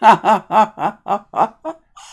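A woman laughing: a run of about seven short chuckles, some four a second, loudest at the start and tailing off.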